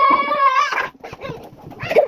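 A young girl's high voice in one long, drawn-out call lasting about a second, followed by quieter scraps of sound.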